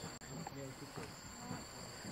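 Insects trilling steadily in the background, two continuous high-pitched tones, with faint distant voices.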